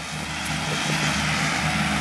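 Kubota M9540 tractor's diesel engine running under steady load while pulling an 11-foot Kubota mower through alfalfa. It is a steady drone that grows a little louder early on as the tractor comes closer.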